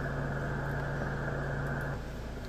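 Audio from an SDRplay RSP1A software-defined radio tuned to 7.100 MHz in the 40-metre band, played through computer speakers: a steady hiss of band noise with a low hum, and no voice or signal standing out.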